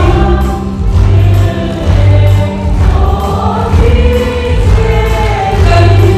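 A large children's choir singing with music accompaniment, over steady low bass notes that change about once a second.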